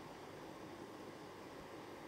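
Faint, steady background hiss of room tone with no distinct sound in it.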